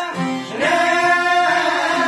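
Men singing an Albanian folk song with plucked çiftelia lutes; a new sung phrase begins about half a second in and is held.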